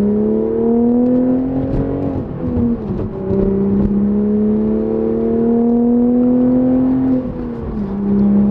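Manual Toyota GR Supra's B58 turbocharged inline-six pulling hard, heard inside the cabin. The engine note climbs, drops sharply at a gear change about two and a half seconds in, then climbs steadily again for about four seconds before falling near the end.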